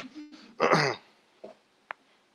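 A man clearing his throat once, a short rough rasp about half a second in. A brief faint click follows near the end.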